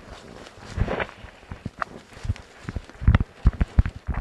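Footsteps and rustling in forest-floor litter: irregular crunches, snaps and thumps as the ground is stepped on and disturbed. They are loudest in a quick cluster near the end.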